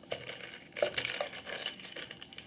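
A hand rummaging inside an aluminium case and handling a plastic bag of small glitter pots: a run of plastic crinkling with small clicks and knocks, loudest about a second in.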